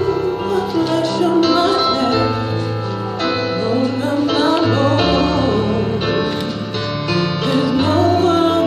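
A woman singing a slow song into a microphone over a continuous instrumental accompaniment.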